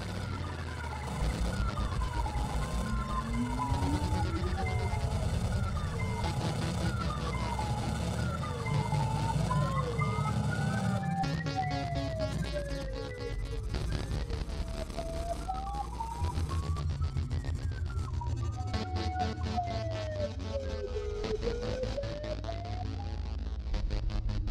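Live-coded electronic music: synth tones gliding up and down in pitch, several slides overlapping, over a steady low bass layer. The texture shifts about halfway through, taking on a denser ticking rhythm up high.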